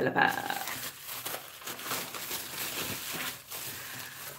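A shipping package being slit and torn open with a small paring knife: irregular scraping, tearing and rustling of the packaging.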